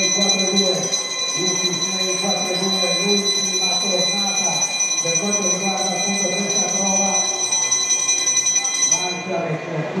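Velodrome lap bell ringing continuously, of the kind rung to signal a sprint or final lap, as several steady high ringing tones that stop suddenly about nine seconds in.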